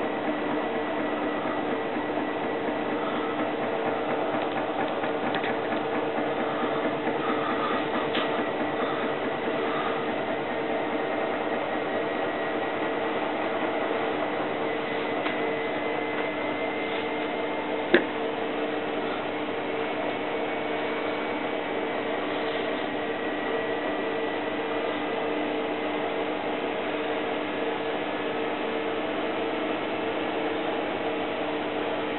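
Miele WT2670 washer-dryer running mid-cycle: a steady mechanical hum with a low pitch, and one sharp click about eighteen seconds in.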